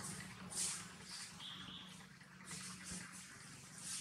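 Faint outdoor ambience: soft, intermittent high rustling and a brief high chirp about a second and a half in, over a low steady hum.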